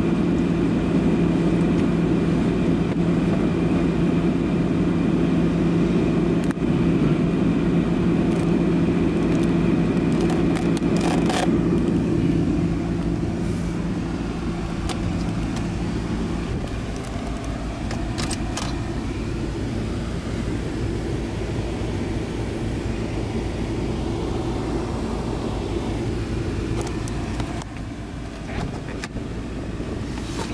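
Car running and rolling along a city street, heard from inside the cabin. A steady low hum runs under the road noise and drops out about halfway through, after which the sound is a little quieter, with a few clicks near the end.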